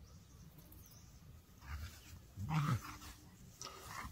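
A dog vocalizing in short bursts: a faint sound about a second and a half in, then a louder pitched one about two and a half seconds in.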